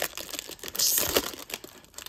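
Foil wrapper of a 2023 Topps Update baseball card pack crinkling and tearing as it is ripped open and the cards are slid out, loudest just before a second in.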